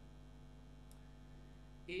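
Steady low electrical mains hum, then a man's voice briefly at the very end.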